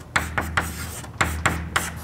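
Chalk writing on a blackboard: a quick run of about a dozen short strokes as an equation is written out.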